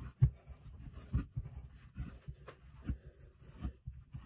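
Hands kneading a ball of fresh egg-yolk pasta dough on a countertop: irregular soft thumps as the dough is pressed down and turned, with light rubbing between them. The loudest thump comes just after the start.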